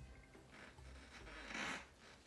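Hair rustling and a soft rasping swell, loudest about a second and a half in, as an elastic bungee cord is pulled tight and wrapped around a ponytail.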